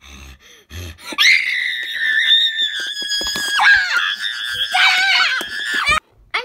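A person's high-pitched scream, starting about a second in and held for several seconds with its pitch dipping twice. It is voiced as a child doll's tantrum after being refused.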